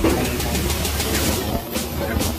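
Kitchen knife chopping kimchi on a cutting board, a few sharp chops, over background music.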